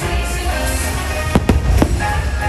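Aerial fireworks shells bursting over music, with three sharp bangs close together in the second half and a steady low rumble underneath.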